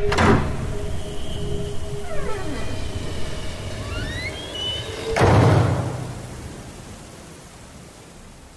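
Dark outro sound design: a heavy boom at the start, sustained droning tones with eerie falling and rising pitch glides, then a second boom with a low rumble a little after five seconds, fading out.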